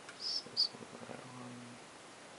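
Two sharp computer mouse clicks about a third of a second apart, the second louder, as a file is picked in an open-file dialog. A faint low hum follows about a second in.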